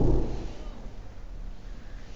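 A single knock on a door right at the start, then a quiet stretch with only a low background hum.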